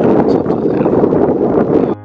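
Strong wind buffeting the camera's microphone: a loud, dense, steady rush that cuts off suddenly at the very end.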